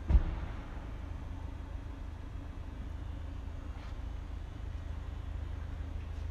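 Steady low background rumble, with a single sharp thump just after the start.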